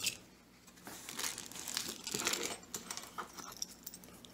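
Packaging crinkling and rustling as hands rummage through items in a cardboard box. The sound starts about a second in and dies away near the end.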